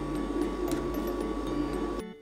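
Steel spatulas scraping and spreading half-frozen ice cream base across the chilled metal plate of an ice cream roll machine, with a few faint clicks, over the steady hum of the machine running.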